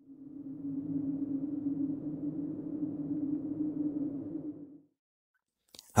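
Low, dark drone sound effect on a single held tone, swelling in over the first second, holding steady, then fading out just under five seconds in.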